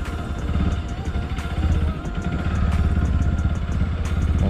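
Bajaj Pulsar NS200's single-cylinder engine running as the bike rides slowly over a gravel track, heard as a steady low rumble.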